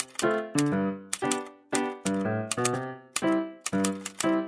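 Light background music on a keyboard instrument, a run of short notes, with sharp typewriter-like clicks struck over it several times a second.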